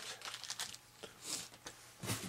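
Hands handling small electronic parts and wiring: a few light clicks, then a brief rustle.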